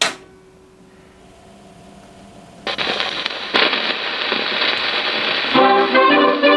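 A sharp click, then a gramophone playing a 78 rpm shellac record: from about two and a half seconds in, loud hissing, crackling surface noise from the needle running in the groove, and near the end the song's band introduction begins over it.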